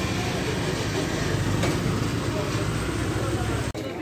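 Steady low rumble of a running vehicle engine mixed with general market noise, cut off abruptly near the end.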